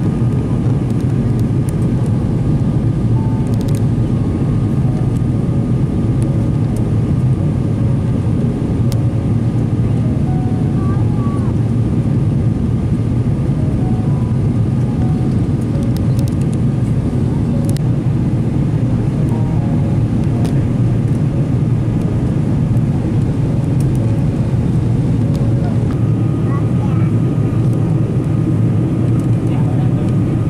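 Steady airliner cabin noise in flight: the constant low rush of the jet engines and airflow heard from a window seat, with a thin steady tone joining near the end.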